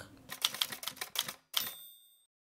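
Typewriter sound effect: about a second of quick key clacks, then a short bell ding.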